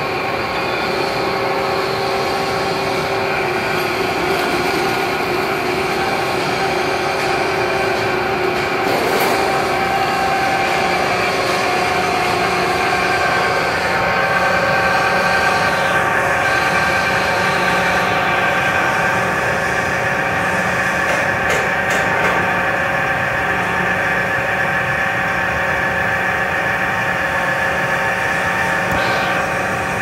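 Pulian AG50-600 twin-shaft shredder running steadily, its electric gearmotor turning the cutter shafts as they shred polyester (Tetoron) fabric. The noise is continuous, with a steady whine of several tones over it.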